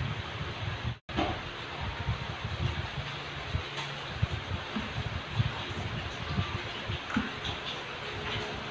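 Electric stand fan running close to the microphone: a steady whooshing hiss with uneven low rumbling from its air stream, cut out briefly about a second in.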